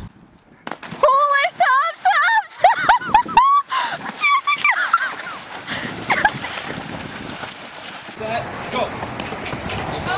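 A run of short, shrill, high-pitched cries, then water splashing and sloshing as a horse and rider plunge into a water jump, with a few more cries over the splashing.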